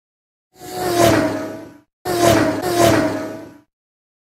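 Intro sound effect: two loud whooshing rushes of air, each carrying a steady low hum, swelling and then fading away. The second rush swells twice.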